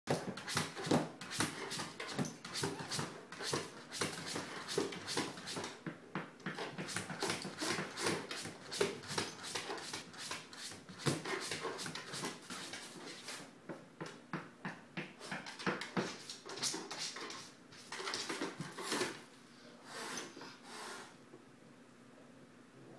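A dog's breathing and panting in quick, irregular short bursts, thinning out over the last few seconds.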